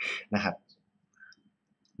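A man's voice briefly in Thai, then a few faint, scattered clicks from a computer mouse as the document on screen is scrolled.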